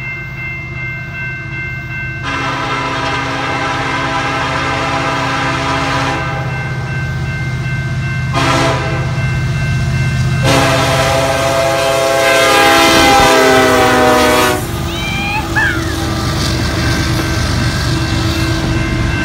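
Norfolk Southern freight locomotive's multi-chime horn sounding for a grade crossing: a long blast, a short one, then a long, loud one, over the steady hum of the diesel engine. A crossing bell rings throughout.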